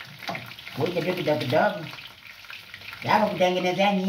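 A man's voice singing wordlessly to himself in long, bending notes. It pauses midway and comes back louder near the end. Underneath is a steady faint sizzle of frying food.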